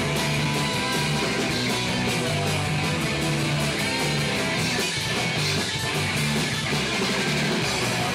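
Punk rock band playing live: electric guitar, electric bass and drums going at a steady, loud level in an instrumental stretch.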